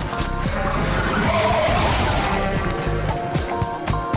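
Background music, with a vehicle's tyres screeching in a skid for about two seconds in the middle.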